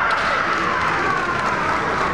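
A kendo fighter's kiai: one long, high-pitched shout that falls slowly in pitch, over the general noise of a large hall.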